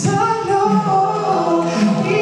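An a cappella vocal group singing in close harmony, several voices holding chords that change every second or so, with no instruments.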